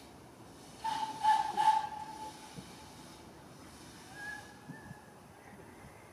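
Narrow-gauge steam locomotive's whistle blowing one steady, hissy blast of about a second and a half, a second or so in, then a fainter, shorter toot about four seconds in.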